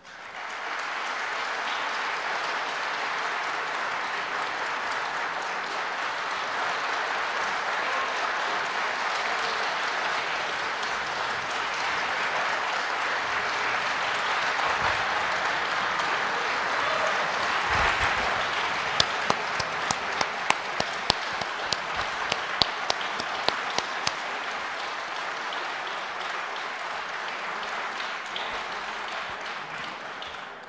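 Sustained applause from a chamber full of members of parliament, steady for about half a minute and dying away at the very end. A run of about ten sharp clicks stands out over it in the middle.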